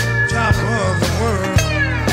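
Live blues sextet playing an instrumental passage. Drums strike about twice a second over a steady bass line, while high melodic lines glide and bend in pitch, typical of slide playing on lap steel or dobro.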